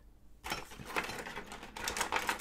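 Dense scratchy clicking and rubbing starting about half a second in: plastic tools and paper handled on the planner page while a sticker is being lifted with Un-Du sticker remover.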